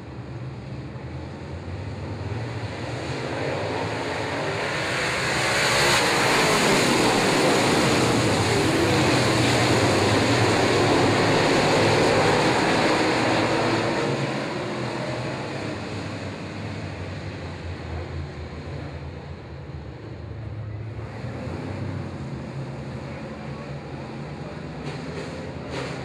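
A pack of dirt late model race cars with V8 engines running together as a field. The engine noise builds to a loud drone from about a quarter of the way in to just past halfway, then fades back down.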